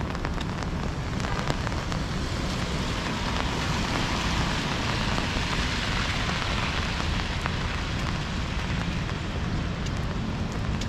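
Steady rain falling on an umbrella held overhead, with many small drop ticks. A hiss of tyres on the wet street swells and fades through the middle. A low rumble runs underneath.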